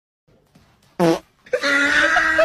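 Near silence, then a short, loud, low buzzy blurt about a second in, followed by a long held note from a person's voice.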